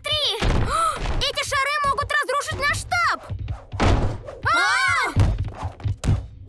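Cartoon sound effects: several heavy thuds, about half a second, four seconds and five seconds in, mixed with wordless vocal cries and exclamations, over background music.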